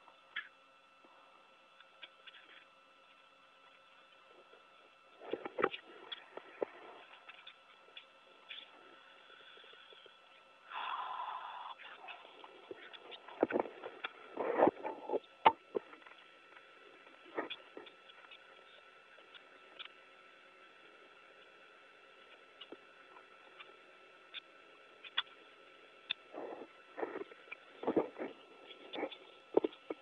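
Scattered knocks, scrapes and rustles from a crew member handling the fabric cover and fittings of an open hatch on the International Space Station, heard over the steady hum of the station's equipment. The handling comes in bunches a few seconds in, around the middle and near the end, with a brief rush of noise shortly before the middle.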